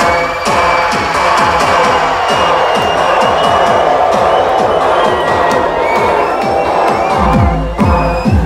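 Electronic dance music with a steady kick drum, played loud on a festival sound system, with a crowd cheering over it. Near the end the deep bass comes back in at full weight.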